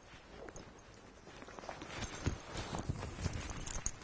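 Faint rustling of a Belstaff waxed cotton jacket being pulled on and shrugged into place, with scattered soft knocks of its fittings; the handling gets busier about halfway through.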